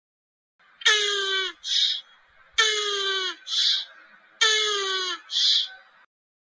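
A turtle call used as the animal's sound: three times, a short falling wail-like cry followed by a quick hiss, about two seconds apart.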